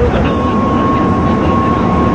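Loud street traffic noise at a bus terminal entrance, with a steady high tone that starts a moment in and holds.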